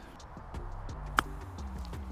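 A single sharp click of a golf club striking the ball on a short chip shot, about a second in, over quiet background music.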